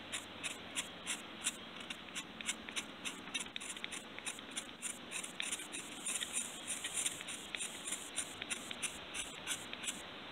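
Steel knife blade scraping iron oxide off a piece of shale in short, quick, even strokes, about three a second.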